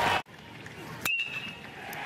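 Crowd noise cuts off abruptly just after the start; about a second in comes a single sharp ping of a metal bat hitting a baseball, ringing briefly.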